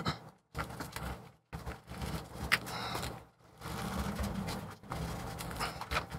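Plastic pry tool scraping and rubbing under a glued-in MacBook Pro battery cell as it is worked through adhesive softened with acetone; irregular scrapes with a few sharp clicks.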